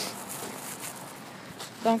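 Faint rustling and handling noise on a hand-held phone's microphone while walking outdoors, over a steady background hiss, with a word of speech near the end.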